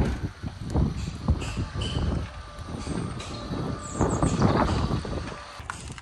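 Motorised Alluroll aluminium roller garage door, remote-operated, rolling up from closed to fully open, running continuously for several seconds.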